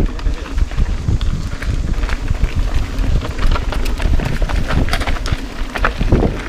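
Mountain bike riding fast down a loose dirt trail: a continuous low rumble of tyres over dirt and roots, with frequent rattles and clatters from the bike over the rough ground.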